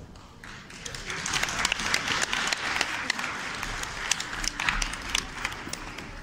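Audience applauding, building up in the first second and thinning toward the end.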